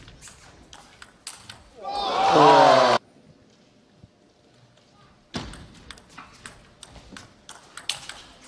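Table tennis ball clicking sharply off bats and table in a fast rally, then a loud shout of voices about two seconds in that cuts off suddenly. After a quiet stretch, ball clicks start again.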